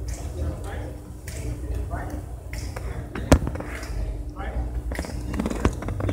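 Shoes stepping on a hard hall floor over a low steady hum, with one sharp knock about halfway through and a smaller one near the end; a voice says "all right" twice.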